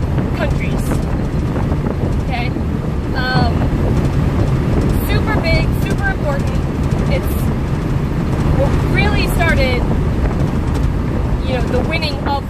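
Steady low road and engine rumble inside a moving car's cabin, with wind buffeting the microphone and a person talking over it now and then.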